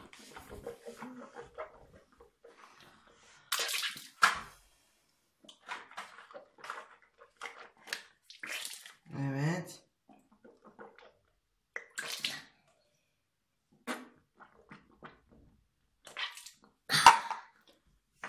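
A child rinsing his mouth with water from a cup and spitting into a bathroom washbasin, in a series of short wet bursts with pauses between them, the loudest near the end.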